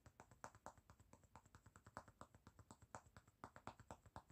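Quiet, rapid ASMR tapping, about a dozen light taps a second, standing in for a character's name in a spoken movie summary.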